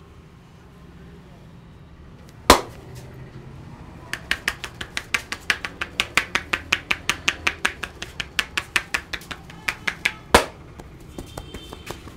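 Head-massage tapotement: the barber's joined palms chop rapidly on the client's head, about six sharp strikes a second for roughly six seconds. A single loud smack comes before the run and another just after it.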